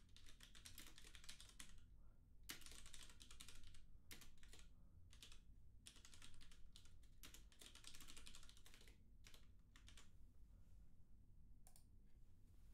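Typing on a computer keyboard, faint, in quick runs of keystrokes lasting a second or two with short pauses between them.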